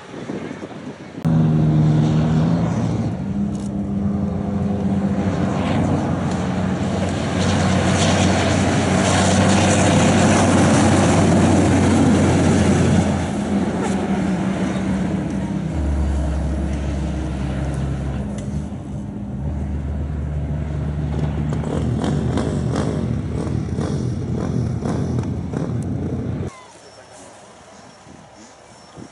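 A 6x6 Dakar rally race truck's engine running hard under load as the truck drives past on dirt, loud and continuous across several shots, with pitch changing in steps. The engine sound cuts in abruptly about a second in and drops away sharply near the end.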